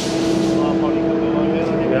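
Steady machine hum with one constant mid-pitched tone held throughout, from heavy machinery running in a steel stockyard shed.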